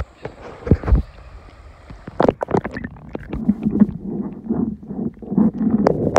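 Creek water heard through a phone's microphone held under water: a muffled, low sound of moving water, with several sharp knocks around one and two seconds in as the phone is handled.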